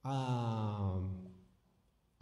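A man's voice holding one long, low vowel-like sound for about a second and a half, sinking slightly in pitch as it fades out, then a short silence.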